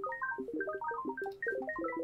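Dense, rapid scatter of short synth pluck notes at random pitches, several per second, from a Sytrus pluck patch in FL Studio: the randomized 'twinkle' effect. It plays through a compressor that makes it a little easier on the ears.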